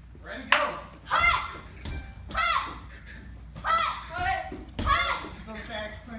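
Children shouting short kiai cries of "hut!" with their kicks, about one shout a second. A sharp smack sounds about half a second in.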